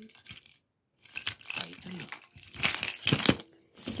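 A bundle of metal keychains, with key rings and clips, jangling and clinking as it is handled and lifted. The jangling starts about a second in and is loudest in the second half.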